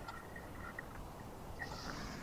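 Faint low rumbling background noise with no speech, as heard over a video-call line.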